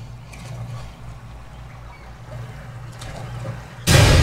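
A low, steady rumble in a horror-film trailer's sound design during a quiet stretch. Just before the end a sudden loud hit breaks in.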